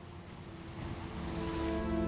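Soft, sustained background music at a lull, with a wash of noise swelling up under it and growing louder toward the end.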